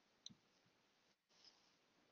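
Near silence, with a faint sharp click about a quarter second in and a softer one near the middle. The background hiss cuts out briefly just after a second in.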